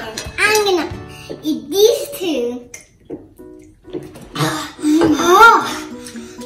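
Young children's voices making wordless vocal sounds in three short spells, with a quiet gap in the middle, over background music.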